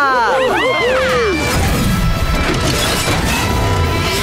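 Cartoon sound effects over the show's music: a quick run of swooping, arching tones, then about a second and a half in a loud, dense rushing and crashing noise with a low rumble that lasts to the end.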